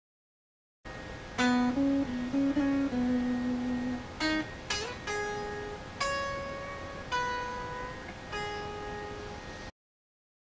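Electric guitar played through a small amp: single picked notes of a minor pentatonic practice line, each ringing out and fading, with a quick slide up about halfway through. The playing starts about a second in and cuts off abruptly near the end.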